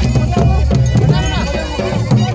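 Traditional drum band playing live: large hand drums beating a steady, quick rhythm under a high, wavering reed-pipe melody that slides between notes, with voices in the crowd.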